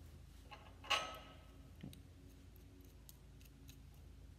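Metal clicks from a thin steel release rod and its fittings being handled against a steel lift post, with one sharper clank about a second in and a few faint ticks after, over a steady low hum.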